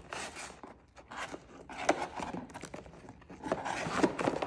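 Plastic-sleeved trading cards rustling and scraping against each other and the cardboard box as a stack is handled, with a couple of light clicks.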